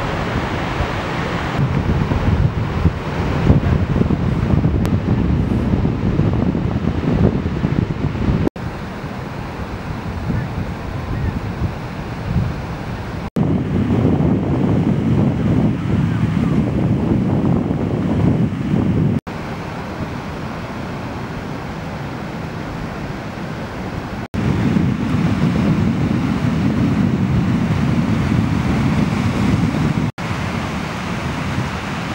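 Wind buffeting the microphone over the wash of surf, in several outdoor sections that change in loudness at four abrupt cuts.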